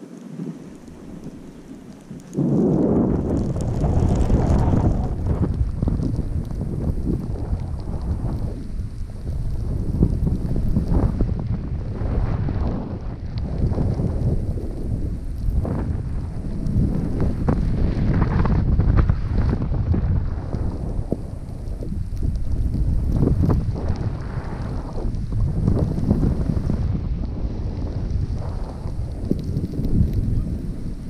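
Wind buffeting a moving action camera's microphone together with the rider's edges scraping over packed snow. Quiet for the first couple of seconds, then a loud, gusting rumble once the rider gets going downhill.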